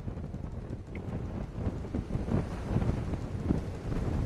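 Strong storm wind buffeting the microphone, a low rushing rumble that swells and eases in gusts, from the approaching cyclone's winds.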